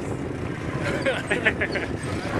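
Wind rumbling on a camera microphone carried on a moving bicycle, with the voices of nearby riders in the middle.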